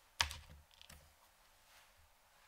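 Light plastic clicks from handling a small plastic box of hair elastics: a sharp pair of clicks, then a few softer ones about a second in.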